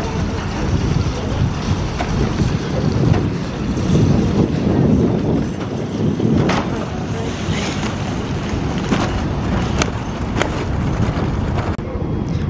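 Metal shopping cart rolling across asphalt, its wheels rumbling, with occasional sharp clicks and rattles. Wind buffets the microphone throughout.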